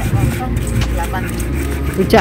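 Stone pestle grinding and knocking against a stone mortar (cobek) as rujak sauce is pounded, in short scattered clicks. Underneath runs a steady low rumble of road traffic, with faint voices.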